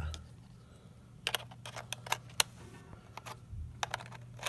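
Small sharp clicks and taps of a metal M42-to-Nikon adapter ring being set against a Nikon D70's lens mount, in a scattered run starting about a second in.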